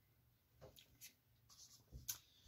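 Near silence, with a few faint clicks and a soft thump near the end as a plastic pouring cup is set down on a canvas.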